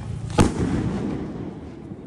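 A rassi bomb (an Indian firecracker tightly wound in rope) exploding with a single loud bang about half a second in, its echo dying away over the following second.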